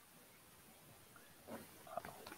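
Near silence: room tone on a video call, with a faint, brief sound about one and a half seconds in and again near the end.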